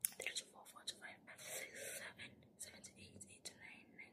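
Faint mouth sounds from a pause in talking: a string of soft clicks and lip smacks with breathy, whisper-like breaths, and no voiced words.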